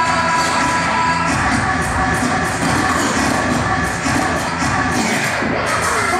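Turntable scratching over a hip-hop beat: a vinyl record pushed back and forth by hand while the mixer's fader chops the sound into quick, rhythmic cuts.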